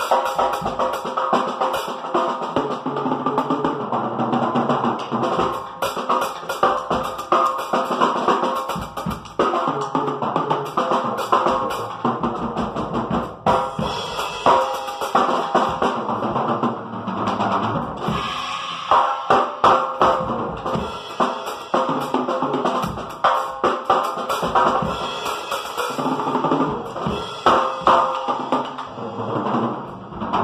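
Acoustic drum kit played continuously at a fast, driving pace: bass drum, snare hits and rolls, with cymbals.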